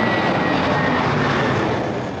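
Jet engines of a Wizz Air Airbus A320-family airliner climbing out at takeoff power: a steady, loud rushing noise with a thin high whine that sinks slightly in pitch early on.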